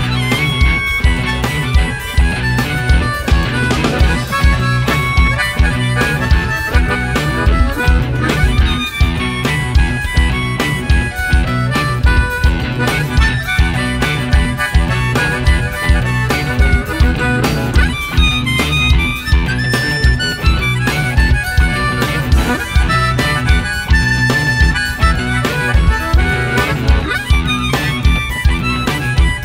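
Live band playing an instrumental forró/baião-rock groove. A harmonica takes the lead over electric bass, electric guitar, drum kit and congas, with a steady driving beat.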